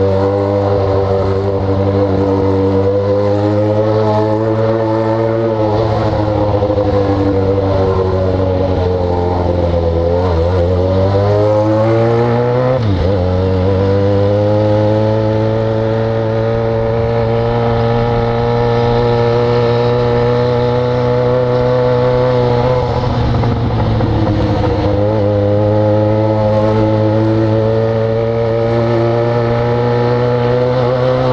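Yamaha XJ6 inline-four motorcycle engine through a de-baffled exhaust, cruising at a steady engine speed. The pitch sinks and climbs back about ten to thirteen seconds in, as the rider backs off and opens the throttle again.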